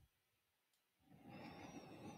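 Near silence: faint room tone, with a soft, faint rush of noise starting about a second in.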